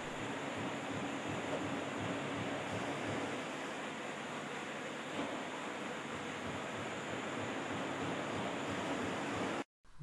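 Steady machine noise from a running CNC lathe: an even hiss with a faint low hum. It cuts off abruptly near the end.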